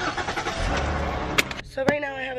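Car engine being started: a rush of noise with a low rumble as the engine catches about halfway through, dropping off about a second and a half in, followed by two sharp clicks.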